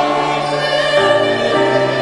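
Church choir singing sustained chords, the lowest note stepping down about one and a half seconds in.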